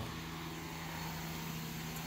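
A steady low hum of a running machine.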